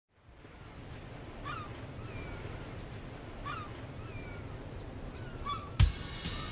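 A steady hiss of ambient noise fades in, with a bird giving short gliding calls about once a second. Just before the end a loud drum hit lands as the music starts.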